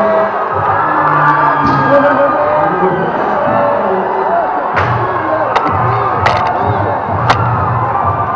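A packed ice-hockey arena crowd cheering and singing, celebrating an overtime winning goal, with music playing through it. A steady low pulse comes in about halfway, and sharp cracks cut through several times near the end.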